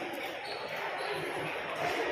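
Shopping-mall hall ambience: indistinct voices of other shoppers, echoing in a large hard-floored hall, with a few soft low thuds.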